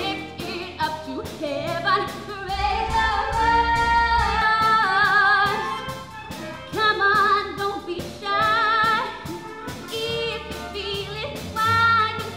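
A choir of young female voices singing held notes with vibrato, in short phrases that break off and start again.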